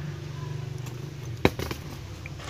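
A welded wire-mesh snake trap being handled: one sharp knock about a second and a half in, over a steady low hum.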